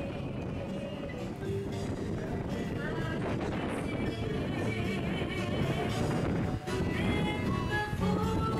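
Latin band playing live, the music growing gradually louder.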